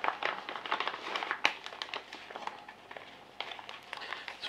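Plastic bag crinkling and rustling as a tightly packed, folded quick start guide is worked out of a small waterproof resealable pouch: irregular crackles and rustles, easing off about three seconds in and picking up again near the end.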